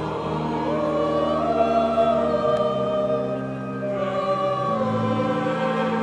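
Choir singing slowly in long held notes over a sustained low accompaniment, the chord shifting about two thirds of the way through.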